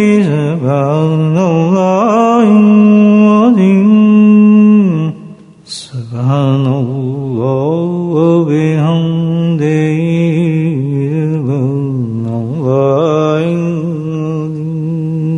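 A man's voice chanting a religious Arabic phrase unaccompanied, in long, drawn-out, ornamented notes. It breaks off briefly about five seconds in, then carries on at a lower pitch.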